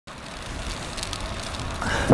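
Wind rushing over the microphone and tyre noise from a road bike rolling on pavement, a steady hiss that grows gradually louder.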